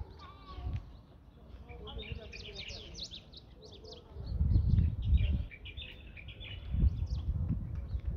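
Many small birds chirping and twittering busily, with low rumbling gusts on the microphone about four seconds in and again near the end.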